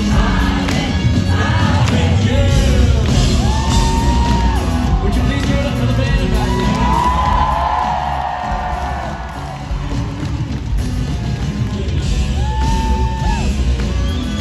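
Live rock band heard through an arena's sound system, with drums and strong bass under a male singer who holds several long notes.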